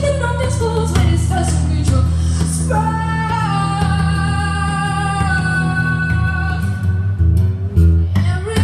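A young woman singing live to her own acoustic guitar playing, amplified through a PA. About three seconds in she holds one long sung note for roughly four seconds, then the melody moves on near the end.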